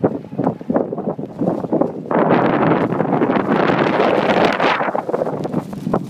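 Sandstorm wind buffeting a phone's microphone, with a loud, sustained rushing gust from about two seconds in that eases off near the five-second mark.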